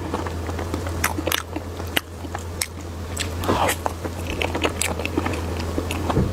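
Close-miked mouth sounds of someone chewing soft whipped-cream sponge cake: rapid wet clicks and smacks, over a steady low hum.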